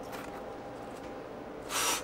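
Punctured lithium-ion pouch cell quietly venting gas with a low, steady hiss. Near the end comes a short, louder rush of air.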